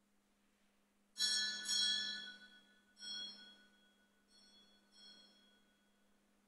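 A small bell struck five times, the first two strokes loudest and the later ones fainter, each ringing out in high, clear tones that fade: the sacristy bell rung as the Mass is about to begin.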